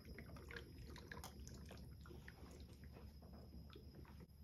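Faint, irregular fizzing and popping of a group 2 metal reacting with hydrochloric acid in a stoppered flask: small pops of hydrogen gas bubbling off, the sign that the reaction is under way.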